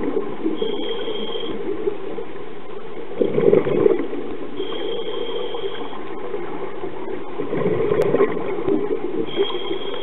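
Scuba regulator breathing heard underwater through the camera housing. A thin high tone sounds with each inhalation, three times about four seconds apart, and two bubbling bursts of exhaled air come between them over a steady underwater hiss.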